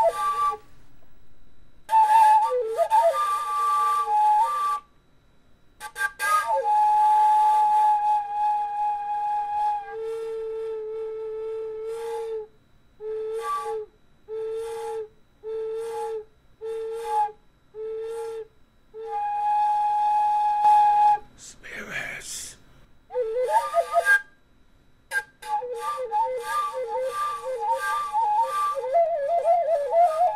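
A flute playing a slow melody in phrases with short pauses, including a run of short repeated notes about one a second in the middle.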